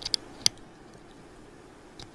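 A few small sharp clicks in the first half second as a 9-volt battery's terminals are pressed onto the leads of a 1000 µF capacitor to charge it, then faint room tone.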